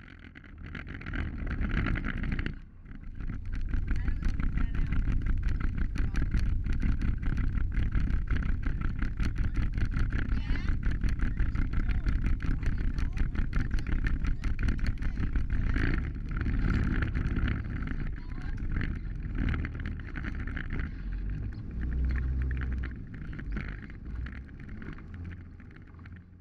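Side-by-side UTV driving on a dirt track, its engine running with a dense rattle from the open cab, heard from inside the cab.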